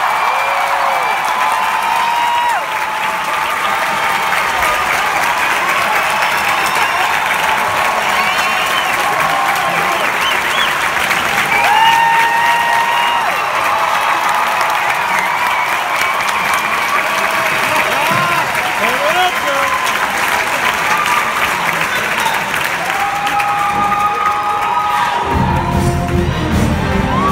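Concert hall audience applauding and cheering, with scattered whoops and shouts over the clapping. An orchestra starts playing near the end.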